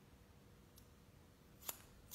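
Near silence broken by a single sharp snip of haircutting scissors closing on a section of wet hair, near the end, with a fainter click a little earlier.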